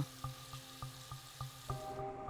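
Water running from a bathroom tap over soapy hands being washed, faint, under soft background music; near the end the water sound drops away as a new music chord comes in.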